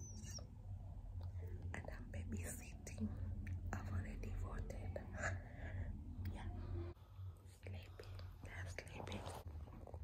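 A woman whispering, too soft for words to be made out, over a steady low hum.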